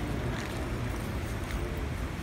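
Steady low rumble of a large, crowded mosque hall, with faint murmuring voices underneath.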